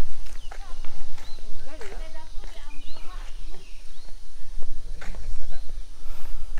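Footsteps of people walking on an asphalt road, with short bird chirps from the roadside trees over a steady low rumble.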